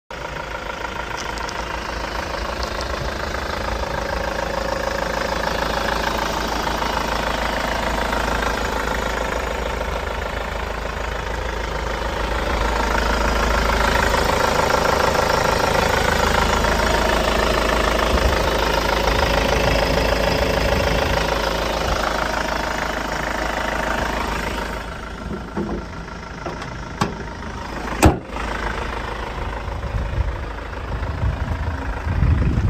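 Hyundai Grand Starex van engine idling steadily with the bonnet open. It is louder through the middle while the engine bay is filmed up close, then drops away about 25 s in. A single sharp click comes near the end.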